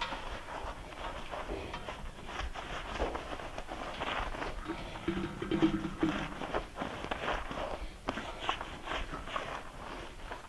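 Hands scrubbing shampoo lather through a horse's wet mane, a dense run of wet, crackly squishing and rubbing, with scattered knocks. A brief low pitched sound about halfway through is the loudest moment.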